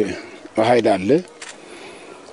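A man's voice speaking a short phrase that falls in pitch, then a pause in which only faint background noise is heard.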